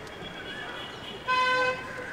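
A vehicle horn gives one short toot, about half a second long, a little past halfway through.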